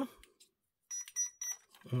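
Three short, quick high-pitched beeps from an RC car's electronic speed controller as it is powered on: its start-up tones.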